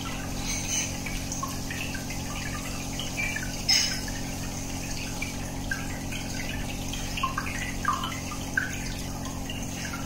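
Aquarium air bubbler: a stream of air bubbles rising and breaking at the water surface, giving scattered small plops and gurgles, with one louder splash near the middle. A steady low motor hum runs beneath.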